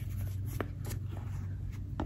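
A stack of quilting fabric squares being leafed through by hand: light rustling and a few soft ticks over a steady low hum.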